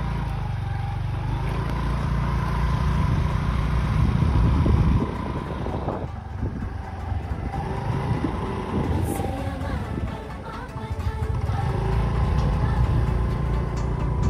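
Motorbike running along a road, its engine mixed with heavy wind rumble on the microphone. It eases off briefly about six seconds in.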